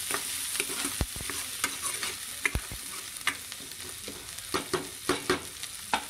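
Spatula stirring sliced onions frying in oil in a nonstick kadai: a steady sizzle with irregular sharp clicks and scrapes of the spatula against the pan, coming more often in the second half.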